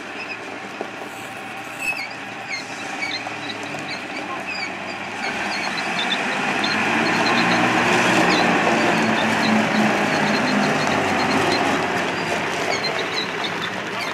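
Engine of a riveted wartime-style armoured car running as it drives past close by. It swells to its loudest about eight seconds in as the car passes, then eases off as it moves away.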